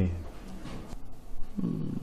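Pause in a conversation between men: the last syllable of a spoken question at the start, then low room tone and a short, low murmured voice sound near the end as the other man gathers his reply.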